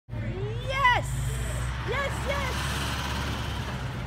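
A woman whooping in celebration: one long rising-and-falling "woo" in the first second, then two short calls about two seconds in, over the steady low rumble of a vehicle engine running.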